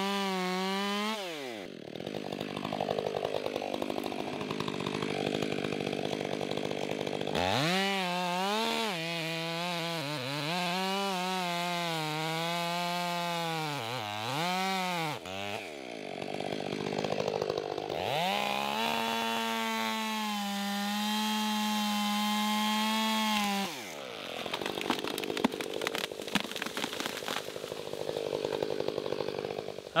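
Chainsaw making the back cut through a walnut trunk: the engine runs at high revs, drops back to a lower note about a second in, then revs again with its pitch wavering under load, drops again, and holds a steady high rev for several seconds before falling away. In the last few seconds there are sharp cracks and crashes as the trunk splits into a barber chair and the tree comes down.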